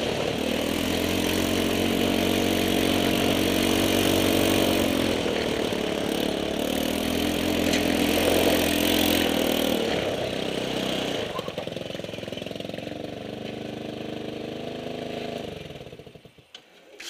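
150cc go-kart engine running under changing throttle as the kart is driven, its pitch rising and falling. It settles to a quieter, steadier note for the last few seconds and dies away at the very end.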